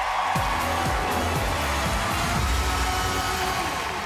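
Show sting music with falling bass sweeps over a studio audience cheering.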